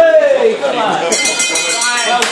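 A man's voice calls out loudly, its pitch falling, then about halfway through a high, steady ringing tone starts and holds.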